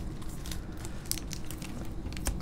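Panini Prizm basketball cards being flipped and slid off a hand-held stack: faint, scattered light clicks and rustles of card against card.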